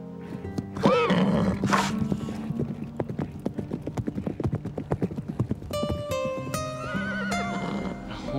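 A horse whinnies once about a second in, then its hooves beat quickly on grassy ground as it gallops away, over background music.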